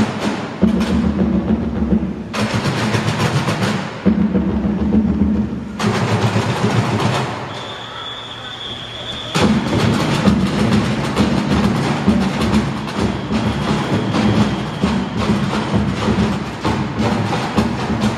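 Percussion group pounding bass drums and junk in rapid, loud patterns. About midway the drumming drops away for a second or two while a high steady whine sounds, then the full drumming comes back.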